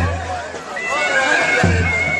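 Live folk dance music: a large bass drum struck twice, heavy and booming, while a high, shrill reed pipe holds a steady note from about a second in. Crowd voices and shouts mix in.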